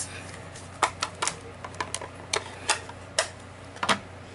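Irregular sharp clicks and taps of hard plastic, about ten over three seconds: a clear acrylic mount block and photopolymer stamps being handled and set down on the work surface.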